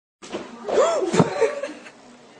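A person laughing in a few short bursts, loudest about a second in, dying away by a second and a half.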